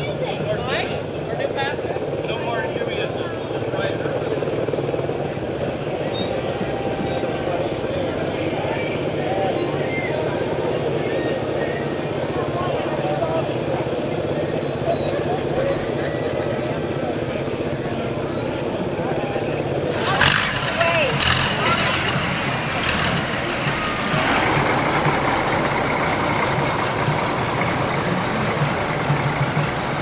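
Several small step-through motor scooters running at a slow parade pace, with voices around them. About two-thirds of the way through, three sharp cracks come close together.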